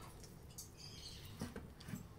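Faint crackles and light ticks of a long knife slicing through the crisp, seasoned crust of a grilled tri-tip (maminha) on a wooden board, a few short sounds about half a second in and again near the end.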